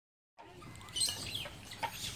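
A troop of macaque monkeys giving short, high-pitched chirping squeaks, a cluster of them about a second in and another just before the end.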